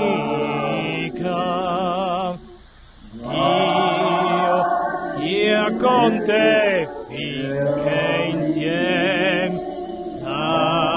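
A slow hymn sung with long, held notes and a wavering vibrato. There is a brief break in the singing about two and a half seconds in.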